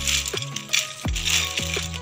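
Crisp fried shredded-potato pakoras crackling and rustling as a hand presses and turns them on a plate, their crunch showing how crisp they are. Background music with a steady deep beat plays throughout.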